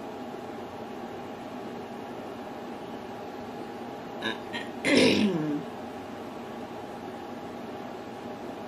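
Steady room hum and hiss. About five seconds in, after a few faint clicks, a person makes one short vocal sound that is not a word, falling in pitch.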